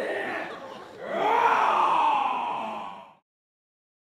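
A drawn-out human vocal cry, a wail that rises and then falls in pitch for about two seconds and fades away about three seconds in, after a shorter voiced sound at the start.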